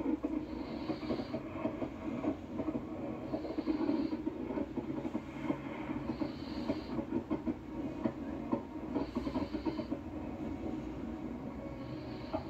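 Fireworks bursting and crackling in dense, rapid succession, a continuous rattle of small pops, heard through a television's speakers.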